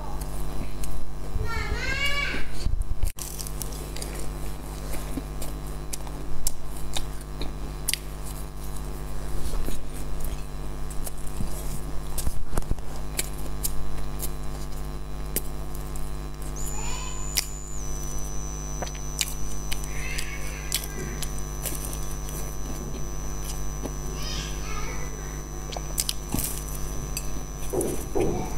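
Eating a flaky baked sesame pastry: small crisp clicks and crunches of the crust and chewing, over a steady electrical hum. A few short, pitched sounds bend up and down about two seconds in, past the middle and near the end.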